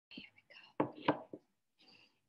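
Brief quiet whispered speech: a few short syllables in the first second and a half, then a faint murmur near the end.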